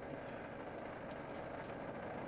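Steady, even background noise with no distinct event: room tone between stretches of talk.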